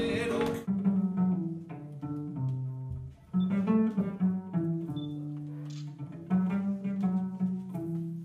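Flamenco guitar and singing, cut off abruptly less than a second in. Then a cello plays alone: a slow melody of long bowed notes in its low-middle register, one pitch held for a second or more before moving to the next.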